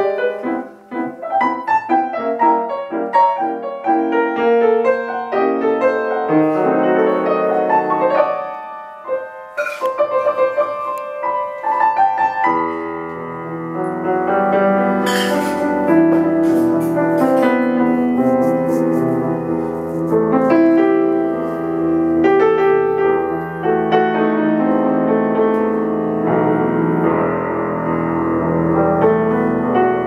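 1902 Bechstein half-grand piano playing an improvised prelude, starting in the middle and upper register. About twelve seconds in, deep bass notes come in and the playing grows fuller.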